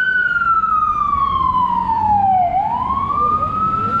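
Fire truck siren wailing loudly. Its pitch falls slowly for about two and a half seconds, then climbs again.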